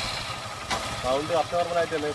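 A Honda motorcycle's single-cylinder engine idling steadily just after starting, run so that its sound can be judged; a voice starts about a second in.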